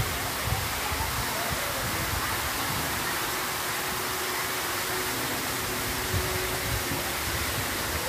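Steady rush of running water at a water park, an even hiss with no break.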